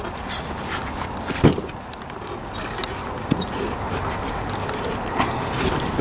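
Gloved hands pulling a rubber inner tube out of a small 9x3.5-4 tire, with rubber rubbing and scraping and a couple of sharp knocks, the loudest about one and a half seconds in.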